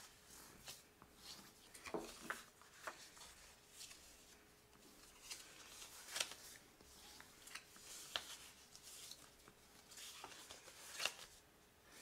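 Faint rustling and crinkling of designer paper being folded along score lines and burnished with a bone folder, with scattered soft clicks and taps.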